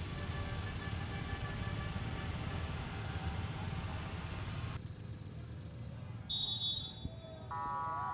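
Motorcycle and truck engines running at a standstill, a steady low rumble. Near the end a brief high tone sounds, then a steady horn-like tone.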